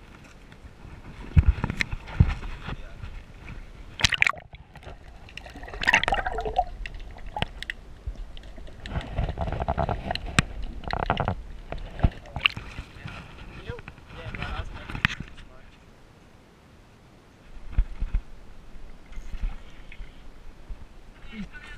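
Water sloshing and gurgling around a camera dipped below the surface, with irregular bursts of muffled, bubbly underwater noise and low rumble.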